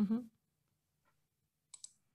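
A murmured 'mm-hmm' at the start, then a faint low hum and two quick computer clicks near the end as the presentation slide is advanced.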